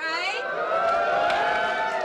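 Sitcom studio audience giving one long, loud 'ooooh' of many voices together, rising at first and then held.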